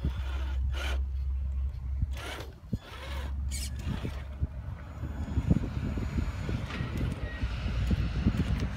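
Traxxas TRX-4 RC crawler's brushed electric motor and gear drivetrain working in short, uneven bursts as it crawls over a wooden step, with irregular clicks and scrapes from the tyres and chassis. A low rumble runs underneath and drops out briefly about two and a half seconds in.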